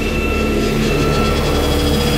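A loud, steady low drone with hiss and a few held tones, building slightly in loudness: a sound effect in a title sequence.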